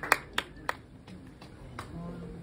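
Last few scattered handclaps from a small audience, thinning out after a run of applause and fading into quiet room tone.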